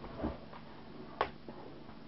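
A few short, sharp clicks of the wired remote's rocker switches being pressed, the loudest about a second in, over a faint steady hum of the car's small DC motors running forward and backward.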